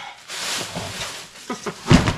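A thin plastic bag rustling and crinkling as it is stuffed into a trash can, followed near the end by a short grunt-like vocal sound and a heavy thump, the loudest moment.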